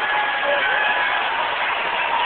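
Steady arena crowd noise with faint music playing through it.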